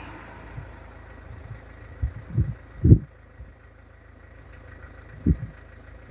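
Road traffic rumbling steadily, with a car passing just at the start, and several dull low bumps on the phone's microphone.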